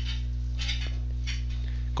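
Steady low electrical hum with a faint hiss underneath, the background of the recording between spoken lines; a faint click about halfway through.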